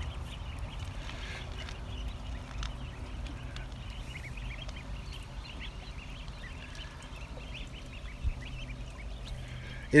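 A flock of goslings and ducklings peeping continuously, many short high chirps overlapping, over a low steady rumble. A single bump about eight seconds in.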